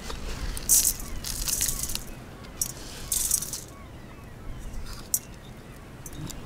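Loose mixed birdseed rustling and crunching in several short bursts as a gloved hand presses a peanut-butter-coated pine cone into a bowl of seed.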